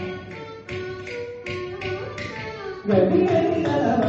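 Carnatic concert music in raga Mohana: a sparse passage of separate struck, ringing pitched notes, then the full ensemble comes back in loudly about three seconds in.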